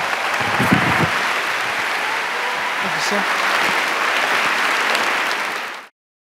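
Audience applauding steadily, cut off abruptly near the end.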